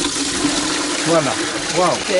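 Water rushing and swirling in a metal basin, a steady hiss that starts abruptly.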